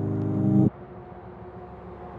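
Song interlude: a sustained synthesizer chord swells louder, then cuts off abruptly under a second in, leaving a quieter low, noisy texture with faint held tones.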